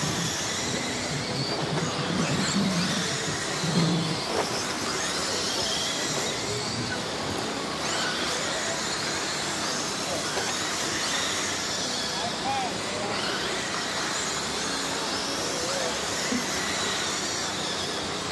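Several radio-controlled late model race cars running laps on a dirt oval, their motors whining up and down in pitch as they pass, over a background of people's voices.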